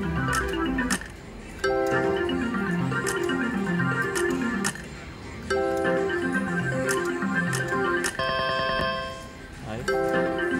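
Double Gold Megabucks slot machine playing its reel-spin music: a repeating plinking melodic phrase with clicks, which drops out briefly and starts again about a second and a half in and again at about five and a half seconds, as each new spin begins. Near the end a different short chime of steady tones plays.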